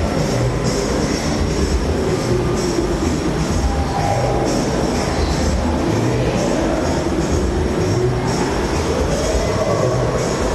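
Electronic trance-techno dance music with a steady beat and synth tones that slide down in pitch midway and climb again near the end.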